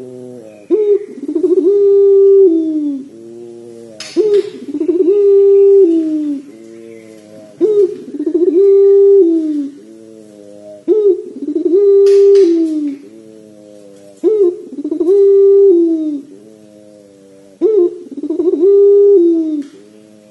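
Barbary dove (puter pelung) cooing in a repeated long phrase. About every three and a half seconds comes a sharp click, then a long loud coo that drops in pitch at its end, trailing off in softer stepped notes that fall away. There are six phrases in all.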